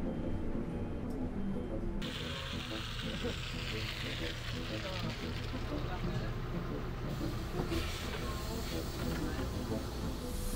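City bus running at a stop with its doors open, with a hiss that rises about two seconds in and fades a few seconds later, over background music.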